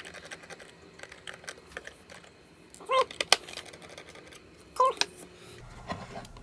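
Small screwdriver with a Torx bit backing out the screws of a plastic remote-controller back cover: faint clicks and ticks throughout, with two brief squeaks about three and five seconds in.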